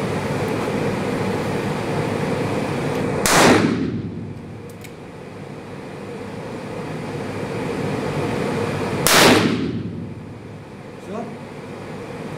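Two shots from a long-barrelled Smith & Wesson revolver, about six seconds apart, each ringing briefly in a small room, over a steady fan hum.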